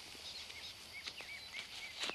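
Quiet outdoor ambience: a steady hiss with several faint, short bird chirps.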